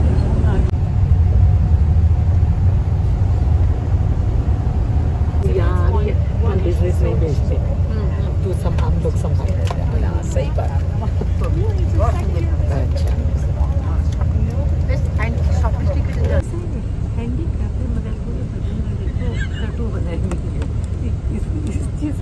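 Steady low rumble of a coach bus's engine and tyres on the highway, heard from inside the passenger cabin, with voices over it; the rumble drops a little in level about sixteen seconds in.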